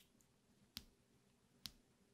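Near silence broken by two faint, short mouse clicks, about a second apart.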